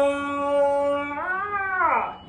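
A man singing without accompaniment, holding one long sustained note at the end of a sung line. Near the end the note slides up and back down.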